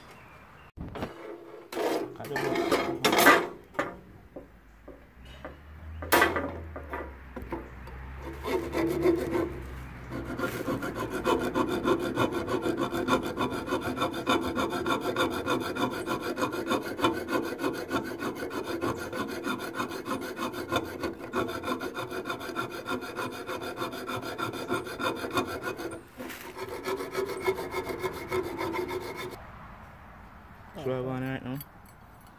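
A bare hacksaw blade, held by hand, sawing through steel rebar: rapid, steady back-and-forth rasping strokes. A few sharp metal knocks come in the first seconds, then continuous sawing from about a third of the way in, with a short break shortly before the end.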